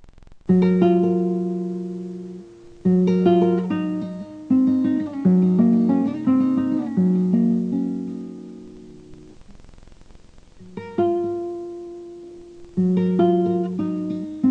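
Solo acoustic guitar playing a song's introduction: a chord plucked about half a second in rings out and fades, then a picked passage of changing notes, a lull, and more plucked chords near the end.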